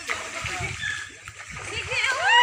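Water splashing as people swim and throw water in a pool, with voices around them.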